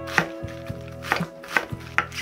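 Kitchen knife slicing napa cabbage thinly on a wooden cutting board: a few sharp knife strikes against the board, roughly half a second apart.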